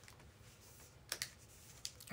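Faint, quiet handling of trading cards on a playmat: a few light clicks and taps as cards are set down and moved, a pair about a second in and one more near the end.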